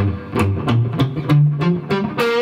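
Electric guitar, a Fender '68 reissue Stratocaster through a Blackstar HT Club 40 amp, playing a quick run of about nine short, clipped single notes on the low strings. Each note is damped by the picking hand's palm just after it is picked, the muted, staccato technique being taught for the lick.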